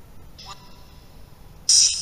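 Electronic sounds from a ghost-hunting app playing through a phone speaker. There is a faint high tone about half a second in, then near the end a sudden loud burst of high, ringing steady tones that fades slowly.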